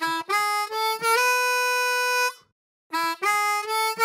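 Blues harmonica playing a short phrase: quick notes stepping up to a long held draw note, played with a darker, rounder tone for contrast with the bright, cutting one. After a brief pause the phrase starts again about three seconds in.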